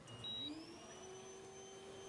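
Cryo sauna starting up: a single high keypad beep, then the machine's whine rising in pitch over about half a second and settling into a steady tone as it begins pushing out cold nitrogen gas.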